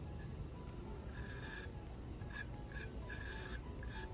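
Underglaze pencil scratching across an unglazed bisque ceramic plate in five drawing strokes: a half-second stroke about a second in, then two short ones, a longer one and a last short one near the end.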